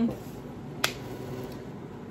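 A single sharp click a little under a second in, over quiet room tone.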